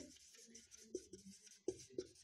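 Marker pen scratching faintly across a whiteboard as a word is written in strokes, with a couple of short ticks near the end.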